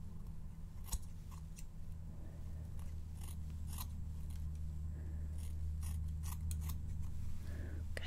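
Hair-cutting scissors snipping close to the microphone: about a dozen short, crisp snips at uneven intervals, the sharpest about a second in.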